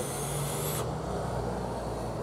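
A breathy hiss of vapour being exhaled after a hit from a mechanical vape mod. It stops under a second in and leaves a low steady hum.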